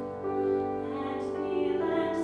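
A grand piano playing a slow, gentle accompaniment, with a woman singing along as she plays.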